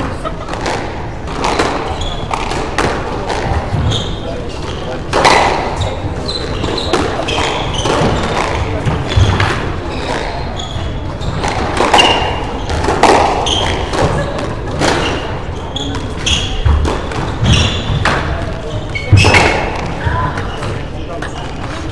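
Squash rally on a wooden court: repeated sharp cracks of the ball off rackets and walls, with short high squeaks of court shoes on the floor, echoing in the hall.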